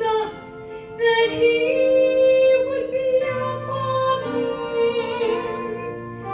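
A woman singing a gospel song solo, holding long notes, with a brief break about a second in.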